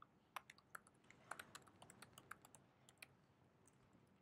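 Faint typing on a computer keyboard: a quick, irregular run of keystrokes that stops about three seconds in.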